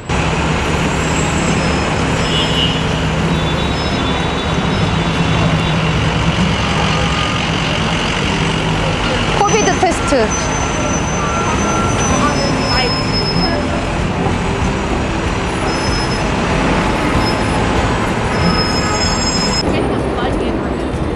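City street traffic: trucks, vans and a bus running close by, with a steady low engine hum through the first several seconds over continuous road noise.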